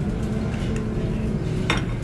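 A fork clinks once against a cast iron skillet near the end, over a steady low background rumble.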